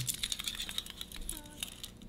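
Light, rapid clicking and rattling of small plastic parts as a retractable clip-lead reel for an electroacupuncture unit is picked up and handled. The clicks are densest in the first second and then thin out.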